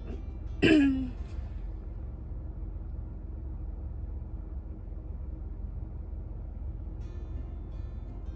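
A woman clears her throat once, briefly, about half a second in. The sound is short with a falling pitch, over a low steady rumble.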